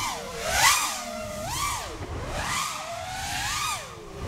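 Brushless motors of an FPV quadcopter (NewBeeDrone Smoov 2306, 1750 kV) whining, the pitch rising and falling about once a second as the throttle is worked. Each high point comes with a rush of propeller air noise.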